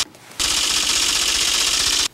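A sound-effect stinger: a brief hiss right at the start, then a loud, steady, high buzzing hiss lasting about a second and a half that cuts off suddenly.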